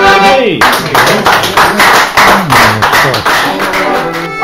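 A fiddle and tin whistle end an Irish traditional tune with a last note sliding down about half a second in, then a small group claps along with voices talking.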